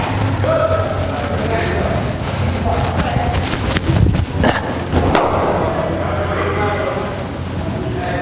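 A cricket ball thuds sharply two or three times in the middle, as it is bowled and pitches in indoor nets. Indistinct voices and a steady low hum run underneath.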